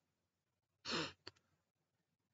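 A man's short sigh, a single breath out about a second in, followed by a faint click; otherwise near silence.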